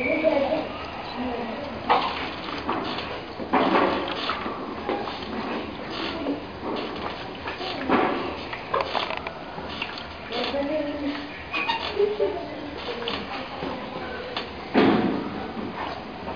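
Indistinct voices in a room, with a few sharp knocks and thumps, the loudest near the end.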